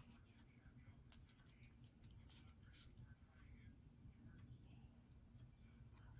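Near silence: room tone, with a few faint, brief ticks.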